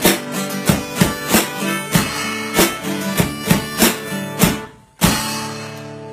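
One-man band: acoustic guitar strummed in a steady rhythm of about three strokes a second, with harmonica and a back-mounted drum kit with cymbals. The playing breaks off just before the five-second mark, then a single closing chord rings out.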